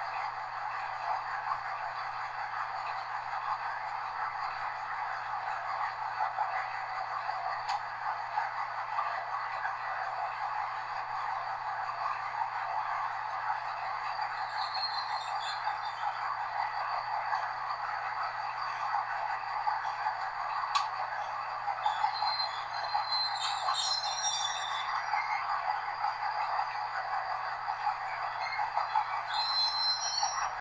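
Steady running noise of a Class 201 'Hastings' diesel-electric multiple unit, heard from inside its cab, with a low steady hum beneath. A couple of sharp clicks and brief high-pitched squeals come about halfway through and again near the end.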